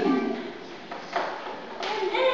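A man speaking through a microphone in a large hall, with a short pause between phrases.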